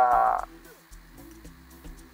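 A man's voice through a microphone holding one drawn-out syllable for about half a second, then a pause over faint background music.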